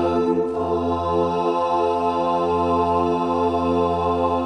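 Mixed SATB choir singing a cappella, holding one long sustained chord with several voice parts stacked from bass to soprano.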